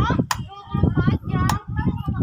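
Two sharp clicks from a blender's rotary speed knob being turned, with no motor starting: the new blender is dead.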